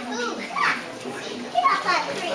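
Young children's voices chattering and calling out, with two louder high-pitched calls, one about half a second in and one near the end.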